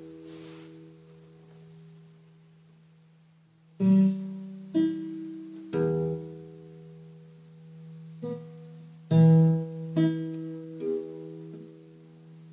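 Slow, sparse music on a plucked string instrument like an acoustic guitar. A note rings out and fades, then after a lull of a few seconds come about seven single notes, each left to ring.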